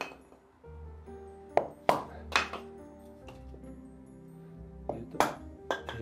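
Hatchet splitting strips off short lengths of pine board on a wooden chopping block: sharp knocks of the blade and cracking wood, three in quick succession about two seconds in and another near the end, with soft background music.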